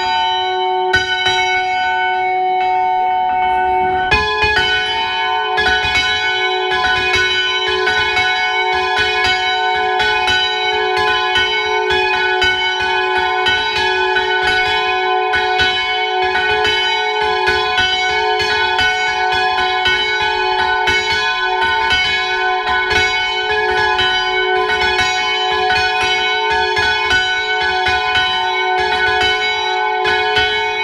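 Bronze church bells on a trailer-mounted bell frame ringing, the large bell swung full circle (volteo) with its clapper striking in fast, regular strokes. About four seconds in, a second, higher bell joins and the ringing thickens into a continuous peal.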